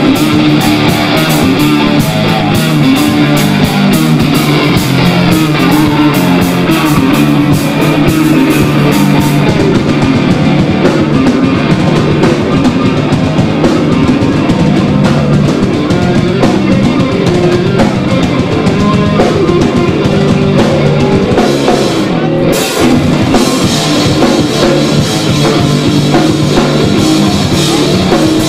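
Grunge rock band playing live: an instrumental passage of electric guitars and drum kit, loud and driving, with a brief drop in the cymbals about three quarters of the way in.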